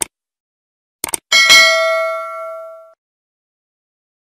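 Sound effect of a subscribe-button animation: a click, then a quick double click about a second in, then a single bright bell ding that rings out and fades over about a second and a half.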